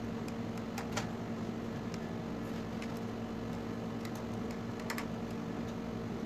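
Scattered light clicks and taps, as of small tools and parts being handled on a TV's metal chassis, over a steady low hum. The sharpest click comes about a second in and a double click near five seconds.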